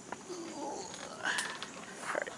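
A person's short wordless voice sounds, with a sharp click about one and a half seconds in.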